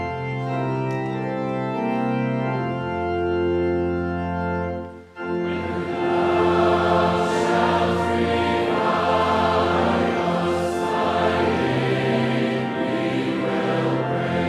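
A church congregation singing a psalter hymn together with organ accompaniment. The music breaks off briefly about five seconds in, then the next phrase or stanza starts, louder.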